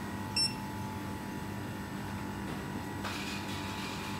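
A single short electronic beep about half a second in, from the ordering counter's equipment, over a steady hum of background noise. A fainter hiss starts about three seconds in.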